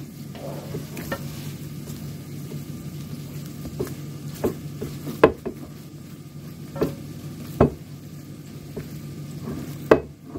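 A spatula stirring and mashing thick homemade cream cheese in a ceramic bowl to work salt through it: a soft, wet scraping, broken by about eight sharp knocks as the spatula strikes the bowl, spaced irregularly.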